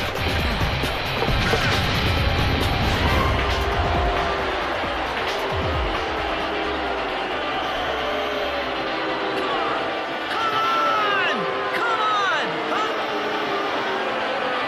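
Cartoon soundtrack: background music with a deep rumble under it in the first half that fades out, then quick swooping glides from about ten seconds in.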